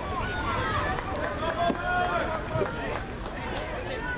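Several voices shouting and chattering over each other on a football sideline, with no single clear speaker.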